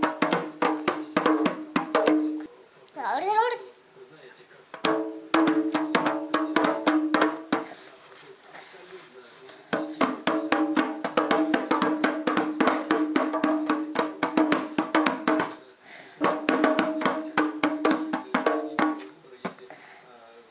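Small rope-laced Armenian dhol played with bare hands by a toddler: fast runs of strokes over a ringing drum tone, in four bursts with short pauses between them. A brief rising voice sounds about three seconds in.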